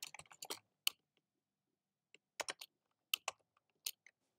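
Quiet computer keyboard typing: a quick run of keystrokes, a pause of over a second, then a few scattered keystrokes.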